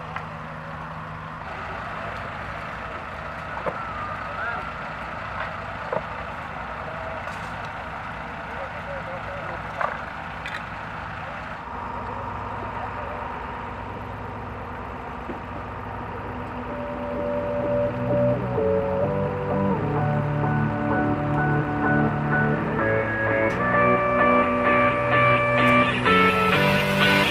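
Steady outdoor background of a low engine hum with faint voices and a few small clicks. About two-thirds of the way through, music with a beat fades in and becomes the loudest sound, growing louder toward the end.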